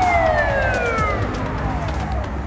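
A siren's wail falling steadily in pitch over about two seconds, over a low music bed.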